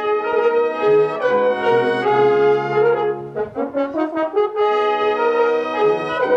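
Student brass choir of trumpets, trombones and tuba playing held chords over a deep bass line, with a short break between phrases about three and a half seconds in.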